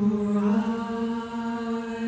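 Women's barbershop quartet singing a cappella in four-part harmony: a held chord comes in suddenly after a pause and moves to a new chord about half a second in.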